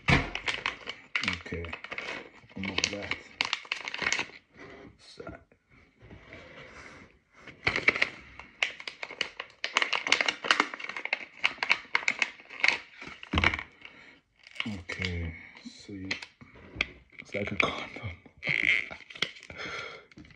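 A flavour-pod packet being handled, crinkled and torn open by hand: a run of crackling rustles and small tearing sounds.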